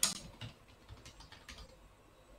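Computer keyboard typing: a handful of separate keystrokes, the first at the very start the loudest and the rest faint and irregular.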